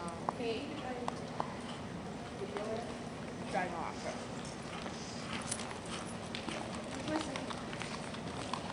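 Hoofbeats of a horse cantering on the soft dirt footing of an indoor arena, with background voices.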